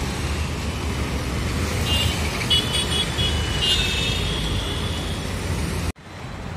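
Road traffic passing: a steady rumble of motorcycles and cars. A high-pitched vehicle horn toots several times in short blasts in the middle, the last one longer and fainter.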